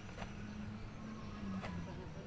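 Low, steady hum of an idling engine, with two faint clicks.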